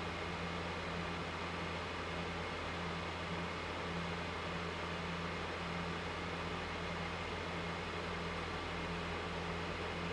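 Steady low hum under a constant hiss, unchanging throughout.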